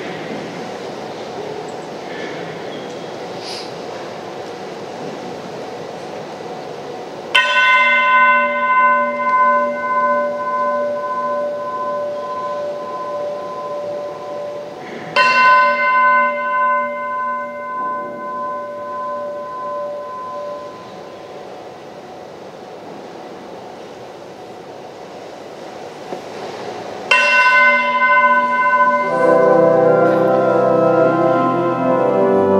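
A bell struck three times, about eight and then twelve seconds apart. Each stroke rings out with several clear tones and fades slowly. An organ starts playing just before the end.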